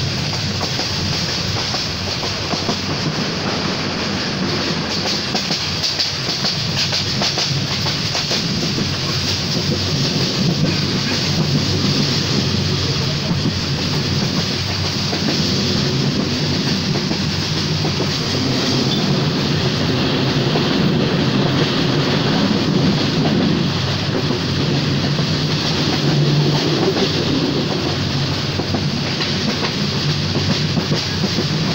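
Passenger train running fast, heard from inside a carriage at an open window: the steady rumble and running noise of the wheels on the track.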